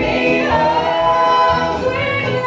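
A bluegrass band with several voices singing in close harmony, holding a long chord over a steady bass pulse.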